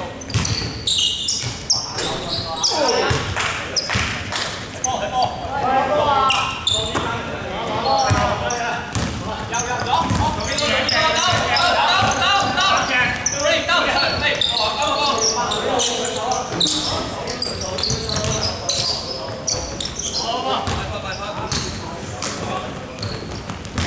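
A basketball bouncing and thudding on a hardwood gym floor during play, with players' voices calling out. The sounds ring in a large hall.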